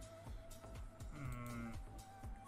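Quiet background music with a steady low beat. About a second in, a short wavering, voice-like tone lasts roughly half a second.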